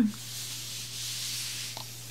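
A plate slid across a cloth tablecloth by hand: a soft rubbing hiss lasting about a second and a half.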